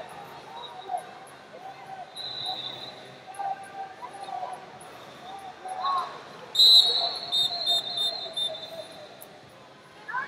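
A referee's whistle blown in one long blast about two-thirds of the way in, the loudest sound here, stopping the wrestling. A shorter, fainter whistle comes earlier, with arena voices shouting throughout.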